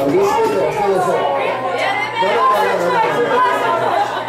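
Several women's voices chattering over one another, amplified through karaoke microphones, with the backing track dropped away.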